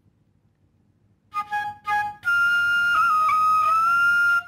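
Bamboo bansuri flute played with 'ta' tonguing in the higher octave. About a second in come a few short, separately tongued notes, followed by one long held note with a brief wobble in pitch.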